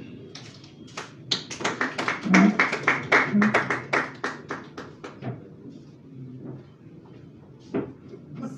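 A small audience clapping briefly, the claps building, peaking and fading out after about five seconds.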